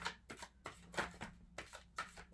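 A deck of tarot cards being shuffled by hand: a run of short, crisp card snaps, about three or four a second.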